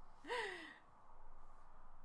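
A woman's brief voiced sigh, its pitch rising then falling, about a third of a second in; after it only faint room noise.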